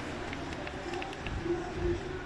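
Quiet background noise with faint, indistinct voice sounds.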